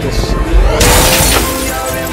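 Music with a loud shattering crash breaking in a little under a second in and lasting about half a second.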